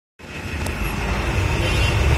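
A Kolkata city bus running, heard from inside the cabin: a steady low engine and road rumble that grows louder over the first two seconds.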